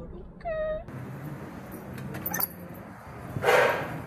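A woman's short, high, drawn-out vocal sound near the start, then the room noise of a restaurant with a few light clicks and a brief loud rush of noise about three and a half seconds in.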